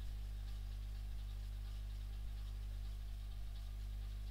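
Steady low electrical mains hum with faint hiss, picked up in the recording between stretches of speech.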